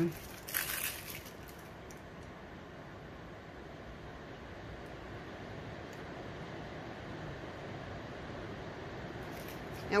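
Brief rustle of gloved hands handling a plastic piping bag about half a second in, then quiet steady room hiss.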